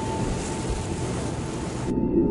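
Rushing water: a steady hiss of water over a low rumble, cutting off suddenly near the end.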